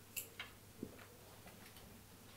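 A few faint, short clicks and taps of a marker on a whiteboard, mostly in the first second, over quiet room hum.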